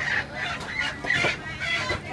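A chicken clucking, about four short calls in quick succession over the market's background noise.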